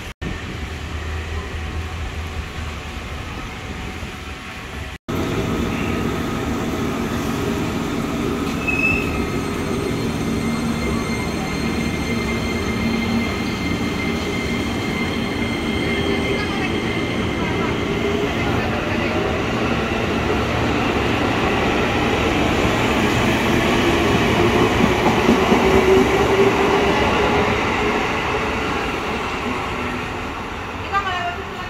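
Jakarta KRL Commuter Line electric multiple-unit train moving along the platform. Its motors whine in several steady tones that slowly shift in pitch over wheel-on-rail noise, growing louder until about four fifths of the way through, then easing. The first five seconds hold only a low rumble.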